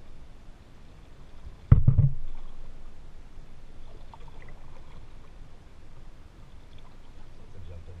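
Quiet water noise around a kayak, broken about two seconds in by one sudden loud thump that fades over about a second.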